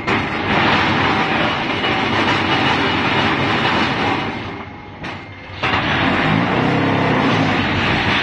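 QT4-15 hydraulic concrete block making machine running with a loud, dense clattering, in two long spells of about four seconds and two and a half seconds with a short lull between them.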